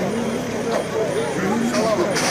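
Casual chatter of several overlapping voices over steady background noise; no music is playing.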